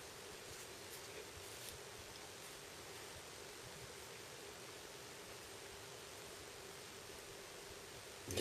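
Faint steady hiss of room tone with a faint hum, and a few soft rustles of loose paper sheets being handled in the first two or three seconds.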